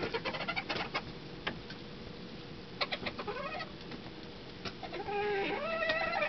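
Bantam rooster calling up close: a short call about three seconds in, then a longer stepped crow starting about five seconds in and running past the end. A quick run of sharp clicks or taps comes in the first second.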